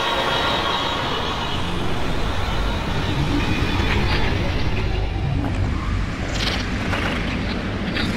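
Electroacoustic music: a dense, noisy texture over a low rumble, close to traffic noise, with a few sharp clicks in the second half.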